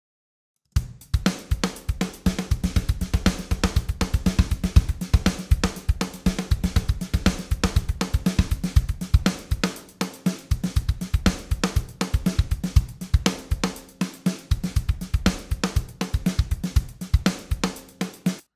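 A programmed software drum-kit beat playing back, with kick, snare, hi-hats and cymbals. Each hit is multiplied by a MIDI note repeater into dotted-eighth repeats that fall off in velocity like ghost notes. The beat starts about a second in after a short silence, and the number of repeats drops from four to two partway through.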